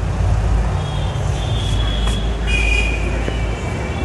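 A stainless steel squeeze cage being worked by hand: metal sliding on metal gives a thin high squeal about one and a half seconds in, then a second, lower squeal from about halfway on, over a steady low rumble.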